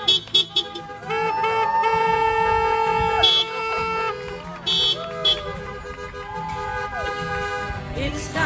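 Several car horns honking from parked cars, overlapping long blasts of different pitches with a few short toots, mostly in the first half and again briefly near the end.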